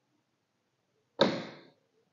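Electric solenoid door lock switched on through a relay module, its bolt snapping over with a single sharp clack about a second in that dies away within half a second.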